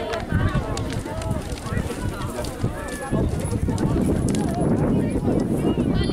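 Hoofbeats of animals galloping over dry ground, with a rough low rumble that grows louder about halfway through and voices of onlookers talking throughout.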